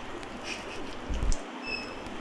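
Outdoor garden background hiss with a low thump a little over a second in, then a brief high bird chirp.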